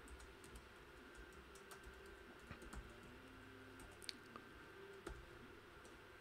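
Faint typing on a computer keyboard: scattered, irregular keystrokes with short gaps between them.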